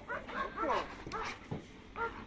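German Shepherd whining in several short, gliding high calls while it grips a bite-work training sleeve.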